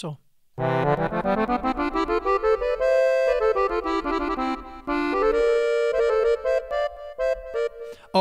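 Sampled accordion played from a keyboard, running quickly up and then down in notes doubled a third above in C major, with added reverb and delay. It starts about half a second in, with a brief dip near the middle before the playing resumes.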